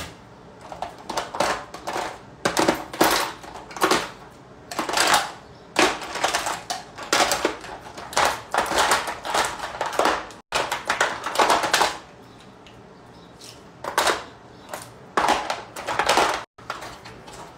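Small hard objects clattering and rustling as they are rummaged through by hand, in quick irregular bursts, with a quieter pause of about two seconds near the end.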